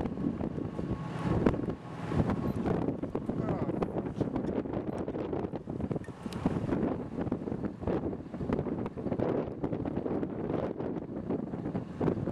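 Gusty wind buffeting the microphone, rising and falling throughout. A pickup truck passes close by about six seconds in.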